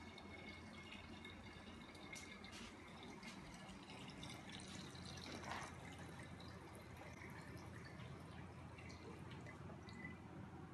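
Faint trickle of red wine running from a siphon tube into a glass decanter.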